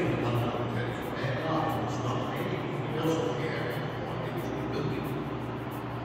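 Indistinct background talk over a steady low hum.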